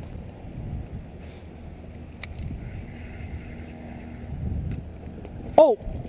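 Low, steady wind rumble on the microphone of a camera on a kayak, swelling for a moment near the end, with a single sharp click about two seconds in.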